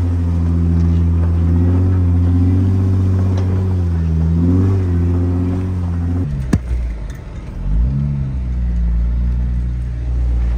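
Jeep engine running at low crawling speed on a rough trail, with a brief rev about four and a half seconds in. Partway through, the engine sound drops lower, a single sharp knock is heard, and another short rev follows near eight seconds.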